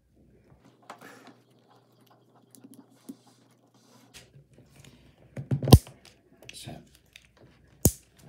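Small plastic parts of a Magic Mixies crystal ball's misting chamber being handled and fitted together: scattered light plastic clicks and rattles, with two sharp clicks about six seconds in and near the end.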